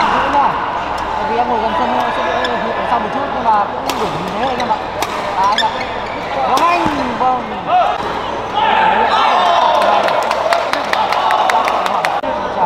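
Badminton doubles rally on an indoor court: sharp racket strikes on the shuttlecock and short squeaks of players' shoes on the court floor, over the voices of spectators in the hall. Near the end the crowd noise grows and a quick run of sharp clicks is heard.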